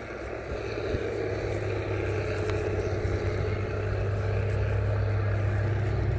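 A motor vehicle's engine hum, steady in pitch, growing louder over the first couple of seconds and then holding level.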